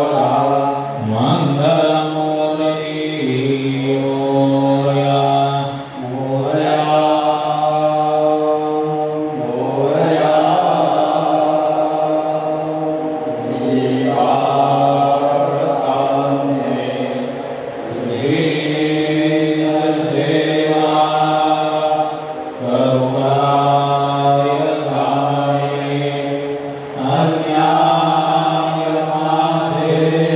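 Hindu devotional chanting: voices intoning a hymn in long phrases over a steady low drone, with short breaks between phrases about every four to five seconds.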